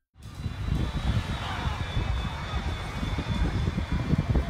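Outdoor sound at a burning airliner on the ground: a dense, fluttering rumble with a faint steady high whine over it, cutting in abruptly just after a moment of silence.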